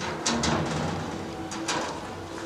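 Sheet-metal gate being unlatched and pulled open, a few short sharp metallic clicks and clanks, over background music.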